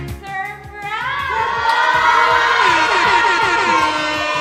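Background music with singing voices: a rock track breaks off at the start, and from about a second in many voices sing or call out together over it, loud and steady.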